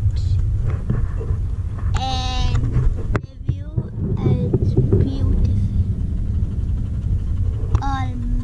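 Steady low road and engine rumble inside a moving car's cabin. A short held voiced sound comes about two seconds in, and brief voices come around the middle.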